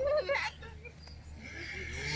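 A brief, high, wavering vocal sound from a girl or woman, most of it in the first half second, then quieter.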